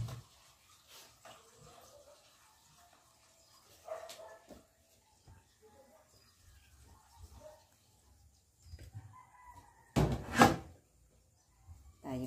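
Faint animal calls, short rising and falling tones scattered over quiet room tone. About ten seconds in, a sudden loud knock lasting about half a second.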